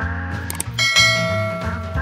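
Background music with a bell-like chime struck a little under a second in and ringing out as it fades: the notification-bell sound effect of a subscribe-button overlay.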